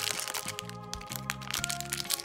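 Foil blind-bag packet crinkling and crackling in the hands as it is pulled open, over steady background music.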